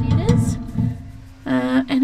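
Background music: a held chord that fades away. A woman's voice is heard briefly right at the start and again near the end.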